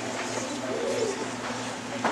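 Auditorium room tone with a steady low electrical hum and a brief, faint murmur of a voice about a second in.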